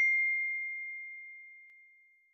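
A single high, bell-like ding, struck just before and ringing on one pitch as it fades away; a faint tick near the end. It is the chime sound effect of a subscribe-button animation.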